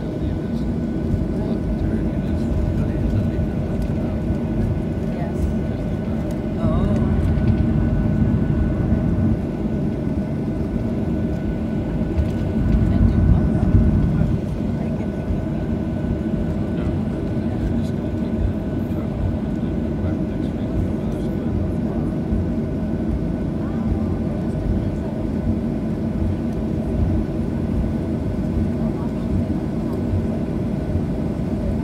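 Cabin noise of a Boeing 737-800 taxiing after landing: its CFM56 engines running at idle with a steady low rumble and a faint steady whine. The rumble grows louder for a couple of seconds about seven seconds in and again around thirteen seconds.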